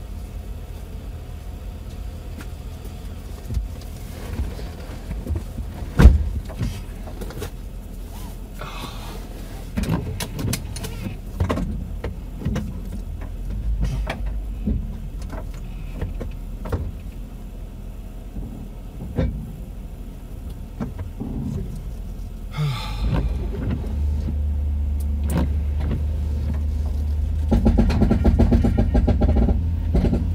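Pickup truck engine idling, heard from inside the cab, with scattered knocks and clicks, the loudest about six seconds in. Near the end the engine gets louder as the truck pulls away and drives.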